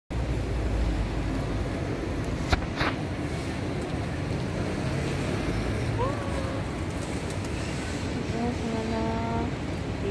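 Steady street ambience with a low traffic rumble. Two sharp clicks about two and a half seconds in, and a brief voice-like sound near the end.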